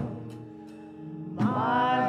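Live gospel music: a held keyboard chord fades between sung phrases after a sharp percussive hit at the start, and the singers' voices come back in about one and a half seconds in.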